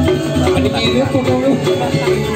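Balinese gamelan ensemble playing, with held ringing metallophone notes and a sliding melodic line over them.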